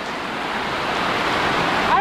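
Heavy rain pouring down, a steady, loud hiss with no break.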